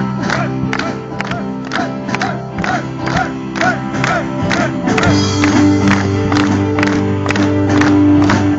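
Live band playing an instrumental passage of a song: drums keep a steady beat over sustained bass and chords, and the harmony shifts to a new chord about five seconds in.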